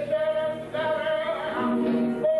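A male flamenco singer holding long sung notes over flamenco guitar accompaniment, with a brief break in the voice a little before one second in.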